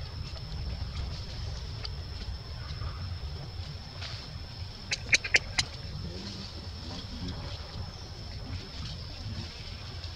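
Baby macaque giving four short, sharp, high squeaks in quick succession about five seconds in, over a steady low rumble.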